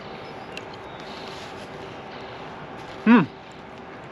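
Steady outdoor background hum, then about three seconds in a man's short, loud "hmm" falling in pitch, as he tastes a bite of pizza.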